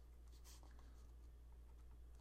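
Faint scratching of a stylus writing on a board, over a low steady hum.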